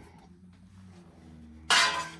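Quiet room with a low steady hum and faint handling of trading-card packs on a table, then a short loud rustle near the end as a pack is picked up.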